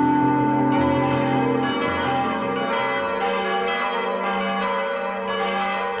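Church bells ringing, a new stroke about every second over the still-sounding tones of the earlier ones.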